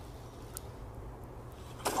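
Faint, steady low rumble with a single small click about half a second in.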